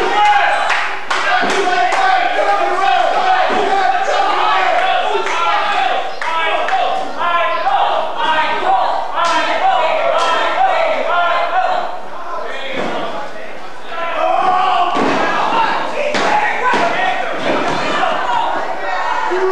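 Wrestlers' bodies hitting the wrestling ring's canvas, several sharp thuds spread through, over continual indistinct shouting voices.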